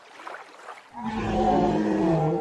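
A dubbed dinosaur roar sound effect: one low, pitched roar starting about a second in, dropping in pitch as it fades.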